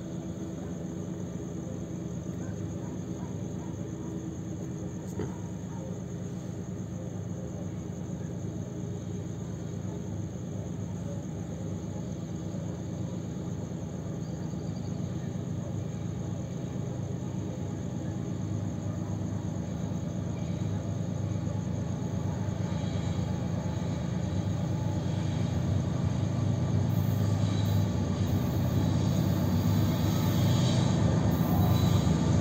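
Diesel locomotives of an approaching freight train, a KCSM GE Evolution-series and EMD pair, heard as a low steady rumbling drone from far off. It grows gradually louder through the last third as the train draws near.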